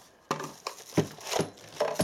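Plastic packaging being opened by hand: a hard blue plastic box pulled apart and a clear plastic bag crinkling, with about five light clicks and knocks of plastic on the workbench.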